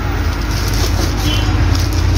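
A steady low rumble in the background, with light rustling as hands work in a plastic bag of white quartz pebbles.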